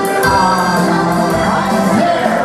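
Live music played on an electronic keyboard: held chords under a melody line.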